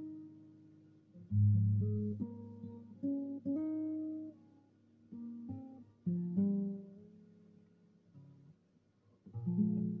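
Baritone nylon-string guitar played fingerstyle: a slow phrase of plucked bass notes with melody notes above, each chord left to ring and fade. There is a brief lull about eight seconds in before the next chord.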